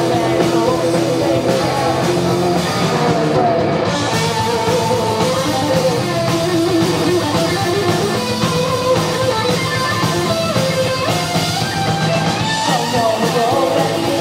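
Heavy metal band playing live: distorted electric guitar, drum kit and sung vocals, loud and steady throughout.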